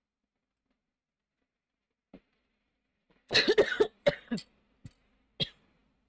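A person coughing: a quick run of several coughs about three seconds in, then a single cough near the end.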